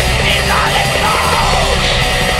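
Extreme metal song: harsh yelled vocals over dense distorted guitars and drums, loud and steady throughout.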